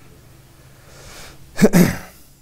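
A man coughs: a faint intake of breath, then a short loud double cough near the end.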